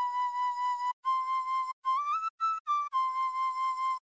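Pan flute lead synth patch in Serum, built on a pan flute sample, playing a short melodic phrase. It starts and ends on a held note, and in the middle the notes are bent up in pitch with the pitch wheel and then back down.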